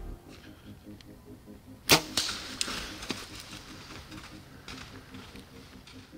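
A bow shot at a deer: one sharp, loud snap of the bowstring as the arrow is released about two seconds in, followed by a second or so of rustling and a fainter sharp click about a second later.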